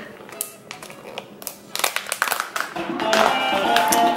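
Plastic resealable pouch crinkling and clicking as fingers work at its zip seal, over background music that grows louder about halfway through.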